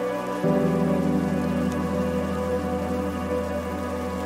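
Mellow background music with sustained chords over a steady rain-like hiss. A deep bass note comes in about half a second in.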